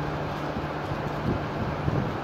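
Steady room hum with a constant low tone, and a few faint rustles and clicks of plastic wrapping being handled around a small USB charger.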